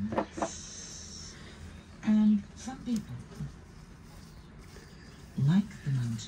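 Faint, intermittent talk in short bursts, loudest about two seconds in and again near the end.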